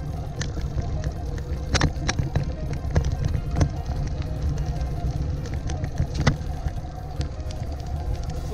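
Bicycle rolling over a bumpy grassy dirt track: a steady low rumble of wind on the microphone with sharp clicks and rattles from the bumps, under background music.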